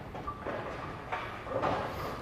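Knocked-down tenpins clattering, tumbling and settling on the pin deck and into the pit after the ball's hit, with a few light knocks among them.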